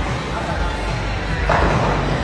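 Bowling ball rolling down a lane and hitting the pins about one and a half seconds in, over background music and voices.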